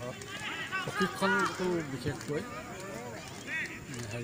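People talking; no sound other than voices stands out.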